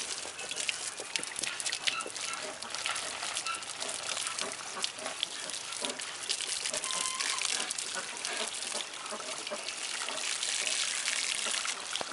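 A garden hose sprays a steady jet of water onto a bear's paw and fur through the cage bars, a continuous hissing splatter.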